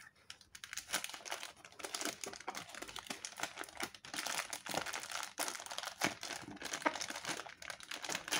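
Clear plastic fish bag, filled with water, crinkling in the hands as it is gripped and twisted at the neck: an irregular run of small crackles.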